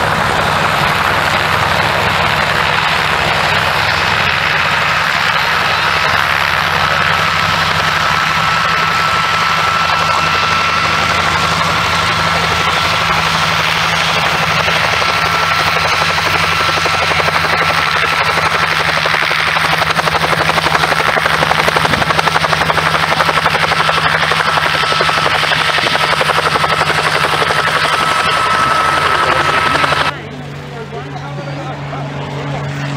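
Messerschmitt Bf 108 Taifun's piston engine and propeller running steadily with a thin high whine over it, growing louder in the last ten seconds or so as the aircraft takes off.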